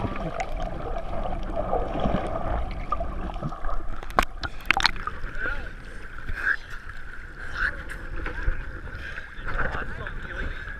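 Muffled rushing water noise heard through a GoPro held underwater. A little after four seconds in the camera breaks the surface with a couple of sharp splashes, and after that seawater sloshes and laps around it.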